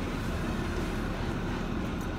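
Car engine idling, heard inside the cabin as a steady low hum with an even hiss.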